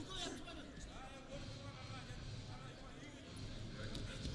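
Faint arena background during a wrestling bout: distant voices calling out over the low murmur of the hall.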